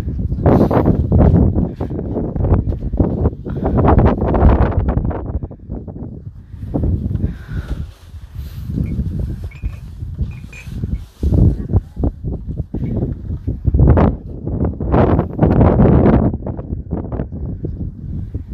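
Strong wind buffeting a phone's microphone in irregular, loud gusts, a deep rumbling roar that surges and drops every second or two.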